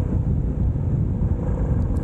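350 cc motorcycle riding at road speed on a climb, heard from the bike: a steady low rumble of engine and road noise with no change in pitch.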